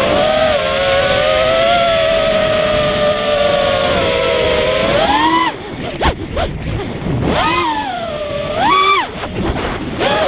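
A racing quadcopter's four ZMX Fusion 2205 brushless motors and propellers whining, heard from the onboard camera with wind noise. The pitch holds steady, then rises sharply about five seconds in before the throttle drops away as the quad rolls upside down, and it swoops up and back down again near the end.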